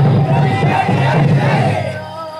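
A group of men shouting together in chorus, loud and continuous; the shouting stops just before the end.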